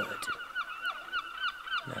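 A bird calling in a rapid, even run of short, high chirps, about six a second.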